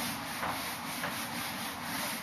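A whiteboard being wiped clean by hand, in quick back-and-forth rubbing strokes, roughly two a second.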